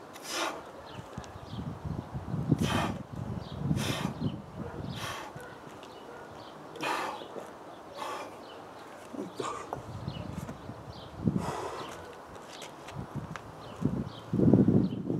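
A man's heavy, forceful breathing from the exertion of lifting two kettlebells: sharp exhales, one every one to two seconds. There is a dull thud near the end.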